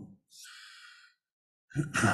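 A man's audible breath, under a second long, about a third of a second in. Near the end he starts clearing his throat.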